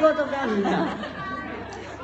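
Speech only: people talking and chattering, loudest in the first second, then quieter.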